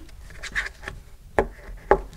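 Hands handling cardstock in a MISTI stamp positioning tool: a faint rustle of paper, then two sharp clicks about half a second apart.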